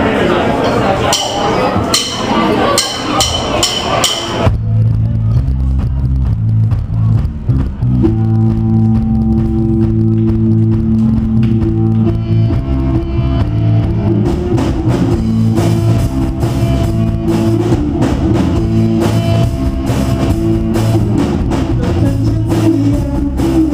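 A live rock band starting a song. First comes a noisy stretch with a run of sharp clicks. Electric guitar and bass come in about four seconds in, and the drum kit joins with a steady beat about fourteen seconds in.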